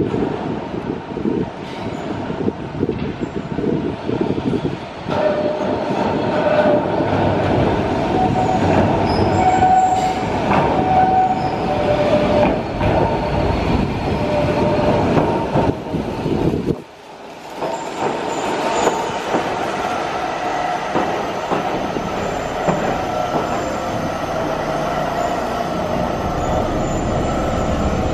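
A Yokkaichi Asunarou Railway 260-series narrow-gauge electric train arriving at a covered platform. The wheels click over the rail joints and squeal in thin tones as it comes round the curve, then it rolls in alongside the platform.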